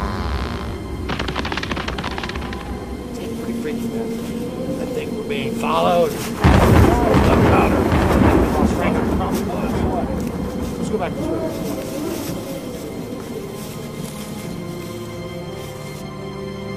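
Background music with a sudden loud rumbling boom about six and a half seconds in, dying away over several seconds.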